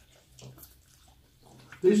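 Quiet table sounds: a few faint soft clicks and rustles of food being handled as a lettuce-leaf wrap is lifted to the mouth, over a faint steady hum. A man's voice starts near the end.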